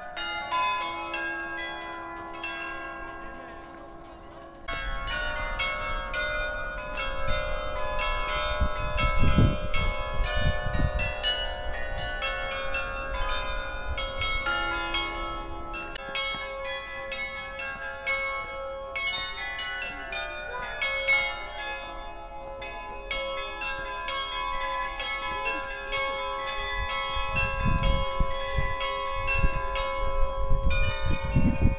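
Carillon bells in the Loreta clock tower playing a tune: many bells of different pitches struck in quick succession, their tones ringing on and overlapping. The ringing is fading and quieter for the first few seconds, then comes in louder about four and a half seconds in. Wind rumbles on the microphone in gusts around ten seconds and near the end.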